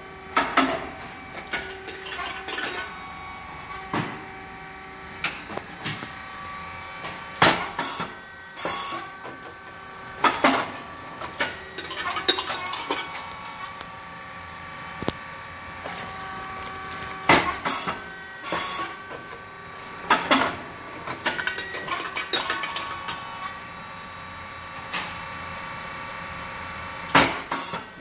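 SYP9002 hydraulic rice cake popping machine running its production cycle: a loud sharp pop about every ten seconds as the heated twin molds release and the rice cakes puff, with a second strong knock of the press mechanism in each cycle, lighter clacks between, and a steady whine from the drive.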